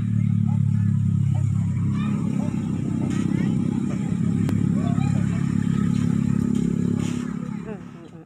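A small engine running steadily with a low drone, which fades out near the end.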